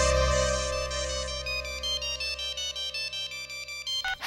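Mobile phone ringtone: a quick melodic run of short electronic notes, about five a second, signalling an incoming call and stopping as it is answered at the end. Low sustained background music fades out within the first half second.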